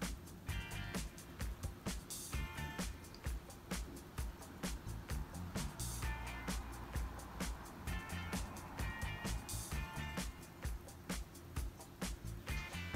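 Quiet background music with a steady beat and recurring short melodic notes.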